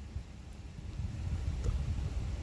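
Wind buffeting the microphone: a low, uneven rumble that grows louder toward the end.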